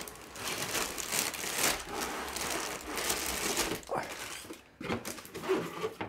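Cardboard box lid and clear plastic bags of building bricks being handled: the bags crinkle and rustle, with some loose bricks shifting inside.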